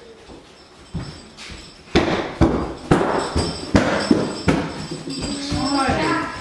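A run of sharp knocks and clicks in a rough beat, about two a second, starting about two seconds in, with a voice coming in near the end.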